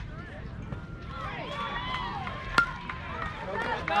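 A baseball bat hitting a pitched ball: one sharp crack about two and a half seconds in, over spectators' voices calling and shouting.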